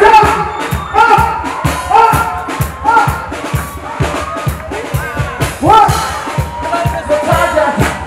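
Live Ethiopian pop music played loud through a concert PA, with a steady beat and a melodic line that rises and falls over it.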